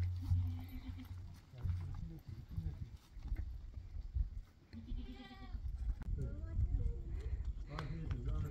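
Footsteps on a stony dirt path, with an animal bleating once, briefly, about five seconds in.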